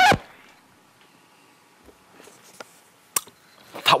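Quiet indoor room tone after a shouted declaration cuts off. There is faint paper handling of a small envelope about two seconds in, and a single sharp click a little after three seconds.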